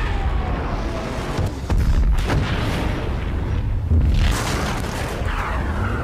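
War-film soundtrack of an air raid: a faint falling whine in the first second, then bomb explosions booming several times over a continuous heavy low rumble.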